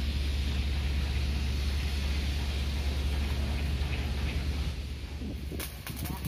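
A steady, low mechanical hum with a hiss over it, from machinery running nearby. Near the end come short, sharp crackles of electric arc welding on the steel hull.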